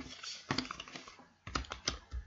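Tarot cards being slid across a tabletop, gathered up and tapped onto the deck: light scraping and separate clicks, with a quick run of taps near the end.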